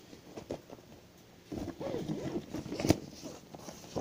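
Rummaging in a bag: rustling and handling noises with scattered clicks, busiest about halfway through, and one sharp click near the end.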